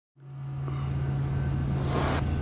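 A steady low hum with a deeper rumble under it fades in from silence and holds, with a short rush of noise swelling near the end.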